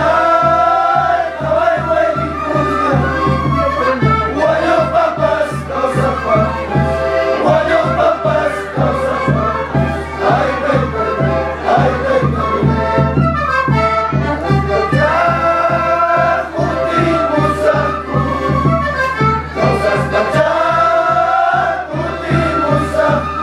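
A group of voices singing a Quechua song (takiy) together, with a steady beat underneath.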